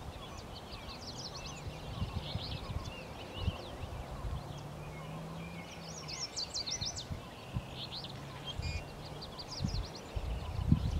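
Several songbirds chirping and singing, short high calls overlapping one another, busiest about six to seven seconds in.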